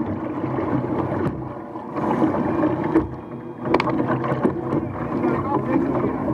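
OSY-400 racing hydroplane's outboard engine running slowly at low revs while the boat creeps along, with water splashing at the hull and a few knocks.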